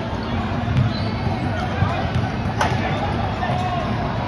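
Basketball game in a gym: spectators chattering, sneakers squeaking on the hardwood court, and one sharp thud of the ball about two and a half seconds in.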